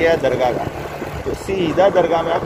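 A man's voice over the steady running of a motorbike engine and road noise while riding.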